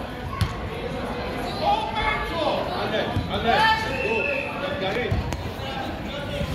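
Spectators and players talking and calling out in a large indoor hall, with a few dull thuds of a soccer ball being kicked on artificial turf.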